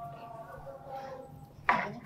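Faint rubbing of a whiteboard eraser wiping a glass whiteboard, then a short, sharp knock near the end as something hard is set down.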